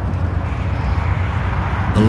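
Steady low rumble of a vehicle under way, growing louder as it fades in.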